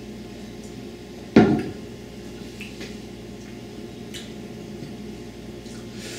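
A drinking glass set down once on a wooden table with a sharp knock, about a second and a half in. A few faint small clicks follow over quiet room tone.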